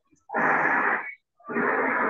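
Two loud rushes of breath-like noise into a microphone: one lasting under a second, then a longer one starting about halfway through.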